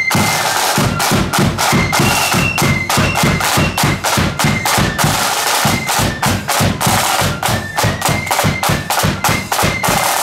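Marching flute band playing: side drums beat a fast, dense rhythm with bass drum strokes, and high flutes hold notes over them.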